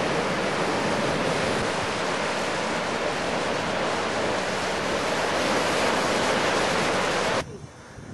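Sea surf breaking and washing over rocks along the shore, a steady loud rushing that cuts off suddenly near the end.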